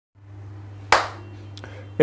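A single sharp hand clap about a second in, over a steady low electrical hum. A fainter click follows just over half a second later.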